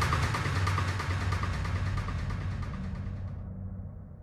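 Psytrance track in a breakdown: a noisy synth sweep over a low rumble, fading steadily quieter. Its high end drops away about three seconds in, leaving only a faint low hum.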